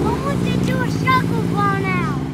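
A car engine running with a steady low rumble as the car rolls slowly by, with people's voices calling out over it about a second in and again near the end.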